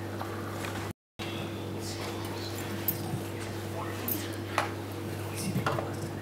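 Steady low electrical hum from a stage PA, with scattered small clicks and knocks; the sound cuts out completely for a moment about a second in.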